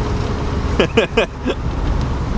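Steady road and engine rumble heard inside a moving van's cabin, with a short burst of laughter about a second in.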